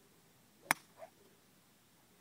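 A golf club strikes a ball off the tee with one sharp crack. A fainter, short sound follows about a third of a second later.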